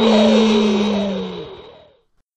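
Cartoon fly-by: a whooshing sound effect with a drawn-out "whee!" as a character zooms past. It swells, then fades away near the end.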